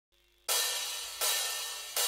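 Three cymbal crashes about three-quarters of a second apart, each sharp at the start and then dying away, the first about half a second in after a brief silence.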